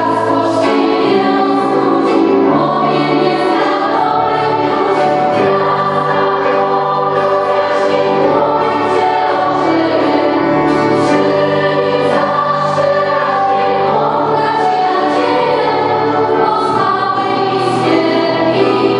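Mixed choir singing a Polish Christmas carol (kolęda).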